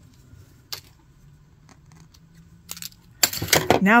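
Pinned quilting fabric being handled at a sewing machine. There is one sharp click about a second in, then a rush of rustling and small clicks near the end as the sewn square is taken off the machine.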